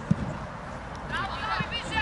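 A football kicked hard: one dull thump just at the start. From about a second in, high-pitched voices call out over the pitch.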